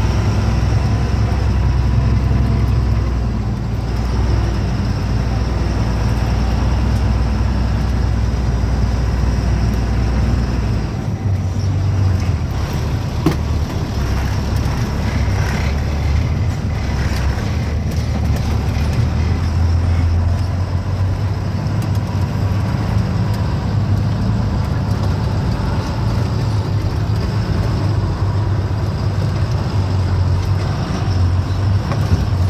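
Diesel engine of an unladen truck, heard from inside the cab while driving: a loud, steady low drone whose pitch changes about eleven seconds in.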